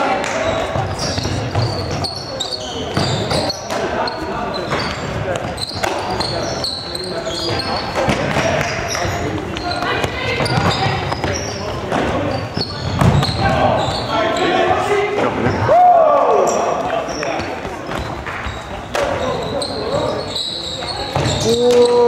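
Players' shouts and calls echoing around a large sports hall, mixed with footfalls and shoe squeaks on the wooden court during an indoor ultimate frisbee point.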